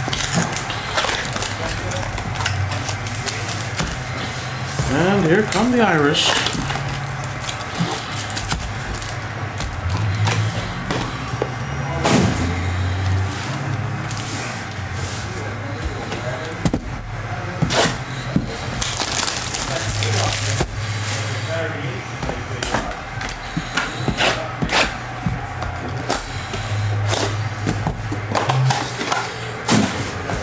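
Background music and indistinct voices, with repeated crinkling and crackling of plastic shrink wrap and foil card packs being torn open and handled.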